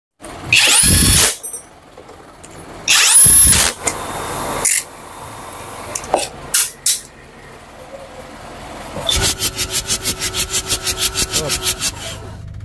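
Cordless impact wrench on the cylinder-head bolts of a Mitsubishi L300 four-cylinder diesel engine: two short loud bursts, each rising in pitch as the motor spins up. Over the last three seconds comes a rapid, even clicking or pulsing, about seven beats a second.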